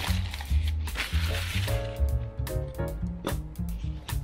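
Background music with a repeating bass line and held notes in the middle.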